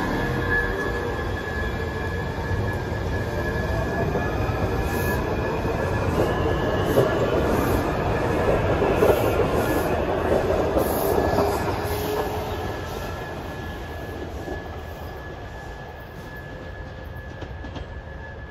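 Washington Metro Red Line train pulling out of the station and accelerating away, its motor whine rising in pitch over a wheel and track rumble. It grows louder for about the first ten seconds, then fades as the train leaves, with a steady high tone heard throughout.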